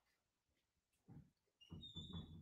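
Near silence: room tone, with a few faint short low sounds in the second half.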